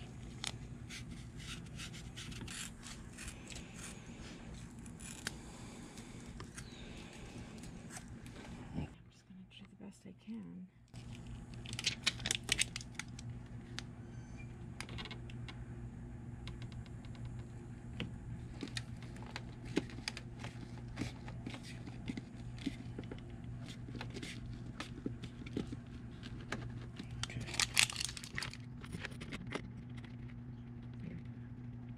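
Hand handling noises: scrapes, clicks and rustles as a small plastic battery charger with Velcro pads is pressed onto a fuse box lid and its wires are handled. There are two louder rustling bursts, one about twelve seconds in and one near the end, over a steady low hum.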